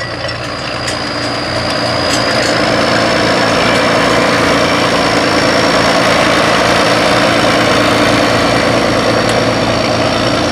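John Deere 6030's turbocharged 531 cubic inch diesel engine running steadily under load while pulling a field cultivator. It grows louder over the first few seconds, then holds steady, with a thin high whine running through.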